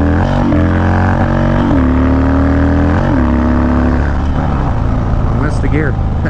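Harley-Davidson Dyna V-twin, through a Bassani Road Rage 2-into-1 exhaust, accelerating up through the gears. The pitch climbs and drops briefly at three upshifts, about a third of a second, a second and a half and three seconds in. After about four seconds the engine settles back under wind noise on the helmet-cam mic.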